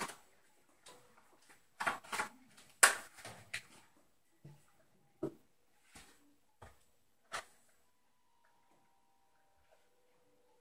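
A string of short knocks and clacks as a stretched canvas and a plastic cup of paint are handled and turned over together for a flip-cup pour, then set down on the table. The loudest clack comes about three seconds in, and the knocks stop about two seconds before the end.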